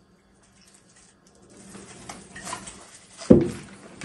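Rustling of paper bags, then a drink in a brown paper bag set down on a wooden table with a single thump about three seconds in.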